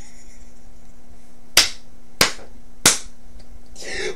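Three sharp hand strikes, about two-thirds of a second apart, from a man slapping or clapping while he laughs, with faint breathy laughter and a steady low hum underneath.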